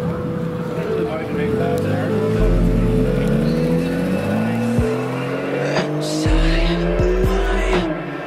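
Aston Martin convertible's engine accelerating hard away, its revs climbing and dropping sharply twice with upshifts.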